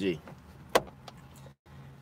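A single sharp click about three-quarters of a second in, over a low steady hum inside a car cabin, with a very brief drop to silence just past a second and a half.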